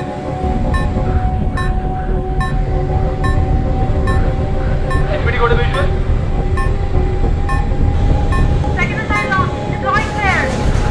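Film soundtrack of a fighter jet cockpit: a steady low engine rumble under a sustained drone, with a short warning beep repeating a little more than once a second, the cockpit's alarm that a missile has been fired at the jet.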